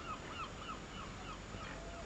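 Gulls calling in a rapid series of short, repeated cries, faint over a low background hiss, thinning out towards the end.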